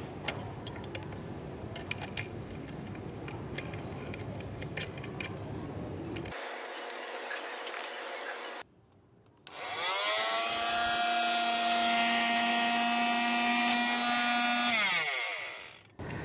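Oscillating multi-tool running unloaded with a blade fitted: its motor spins up about ten seconds in, runs with a steady whine, then winds down near the end. Before that, faint clicks of the blade being fastened with a hex key.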